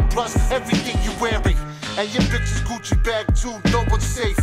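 Hip hop music: rapped vocals over a beat with drum hits and long, deep bass notes.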